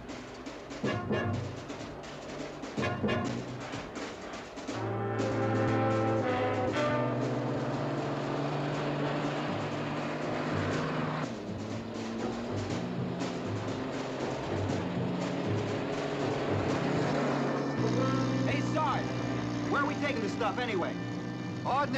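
Orchestral TV drama score led by brass with timpani. It opens with a few sharp accented hits, then moves into long held brass chords about five seconds in.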